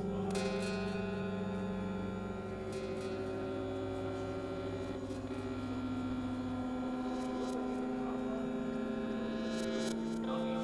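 Layered electronic synthesizer drone: several sustained, steady tones held together, with a few brief noisy crackles scattered through. The lowest tone drops out about two-thirds of the way in while the higher tones carry on.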